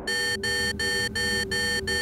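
An electronic tone with a steady pitch, pulsed evenly about three times a second, six identical pulses in a row.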